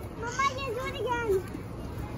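Young children talking and calling out while they play, their high voices rising and falling in short phrases.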